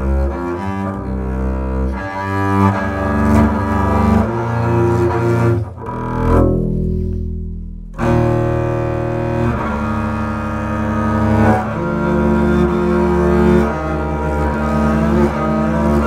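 Solo double bass played with the bow (arco): sustained notes full of overtones, moving between pitches. About six seconds in the bowing lets up and a low note rings and fades for a moment, then the bow comes back in sharply about two seconds later.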